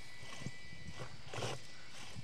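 Mad Torque electric RC rock crawler creeping over rocks: a faint steady motor whine, with about three scrapes and knocks as its tyres and chassis grind against the stone.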